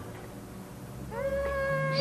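A high voice sings one long held note, sliding up into it about a second in.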